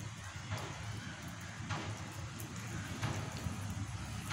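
Faint crackling and rustling of the protective plastic film on a polycarbonate cover being handled and peeled, over steady low background noise.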